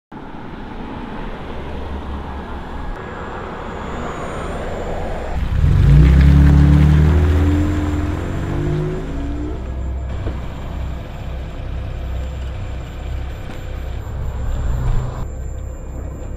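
Pickup truck engine and road noise as it drives, with a deep engine note that swells loud about five seconds in and fades over the next few seconds.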